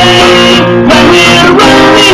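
Acoustic guitar strumming chords in an instrumental stretch of a song, with a brief pause in the strumming just over half a second in while the chord rings on.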